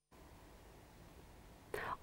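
Faint hiss from the newsreader's open microphone, then near the end a short, audible intake of breath before she starts to speak.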